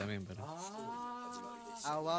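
A person's voice holding one long drawn-out vowel, like a long 'ooh' or hum, on a steady pitch for about a second and a half.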